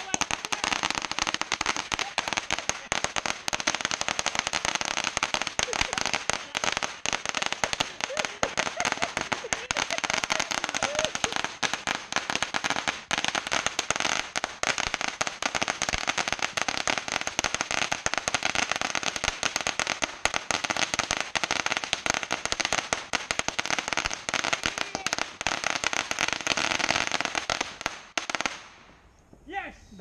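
A long string of firecrackers going off on the ground in a rapid, unbroken run of cracks, which stops shortly before the end.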